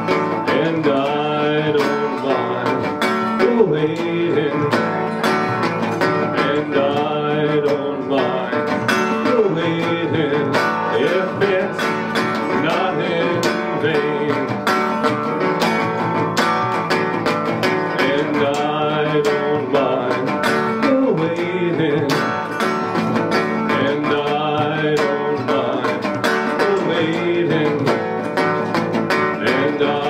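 Regal resonator guitar in open D tuning played steadily, with plucked notes ringing out shimmery from its aluminum cone and some notes wavering and bending in pitch.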